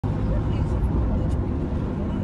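Steady low rumbling outdoor noise on an amateur field recording of a smoke cloud rising after a strike, with no sharp blast heard.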